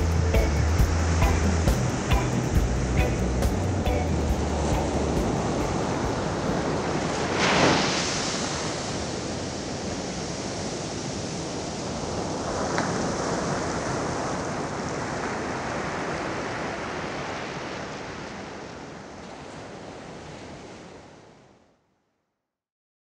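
A piece of music with a beat ends within the first few seconds, leaving the steady wash of ocean surf on a beach. Waves break with a louder surge about seven seconds in and again near thirteen seconds, and the surf fades out just before the end.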